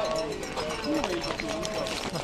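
Running footsteps on asphalt, a steady patter of strides, under drawn-out voice sounds: short held calls or hums that bend in pitch.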